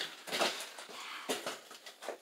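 A few short, soft scrapes and rustles, about four in two seconds, of movement in a narrow rock passage: clothing and the camera brushing against the cave wall.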